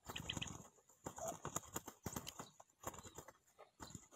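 Spotted dove's wings flapping in repeated bursts of rapid fluttering strokes, with short pauses between them.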